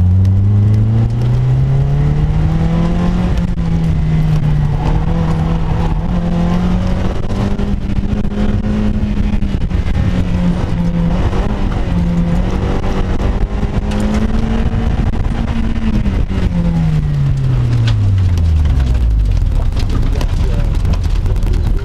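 Sports car engine on an autocross run, heard from inside the open-top cockpit. It climbs in revs over the first few seconds, holds high with brief dips as the driver works through the cones, and near the end drops away steadily as the car slows after the run.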